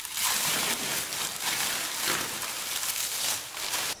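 Plastic stretch-wrap film being stripped off a cardboard carton: continuous crinkling and crackling of the film that cuts off abruptly at the very end.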